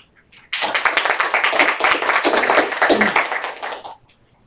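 Audience applauding: a short round of clapping that starts suddenly about half a second in and dies away just before the end.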